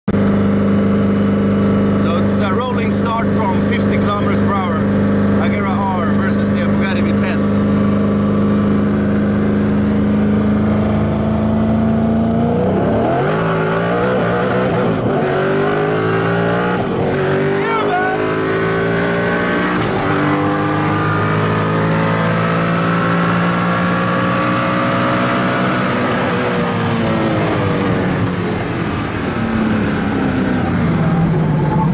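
Koenigsegg Agera R's twin-turbo V8 heard from inside the cabin: a steady drone at cruise, then from about twelve seconds in a full-throttle roll-race pull, its pitch climbing through several upshifts, before falling away as the throttle is lifted near the end.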